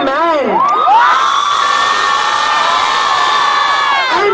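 Concert crowd cheering and screaming. After a short rising-and-falling shout at the start, high-pitched screams are held steady for about three seconds.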